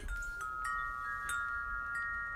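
Wind chimes ringing: a few high notes struck one after another in the first second, ringing on and overlapping.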